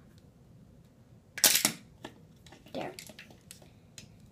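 A makeup product's packaging being opened by hand: one loud, sharp snap about a second and a half in, then softer clicks and handling noise.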